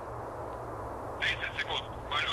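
A steady low hum, then about a second in a thin, tinny voice over a radio or telephone-quality link begins speaking.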